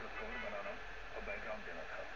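Indistinct speech that the recogniser did not write down, with no other clear sound.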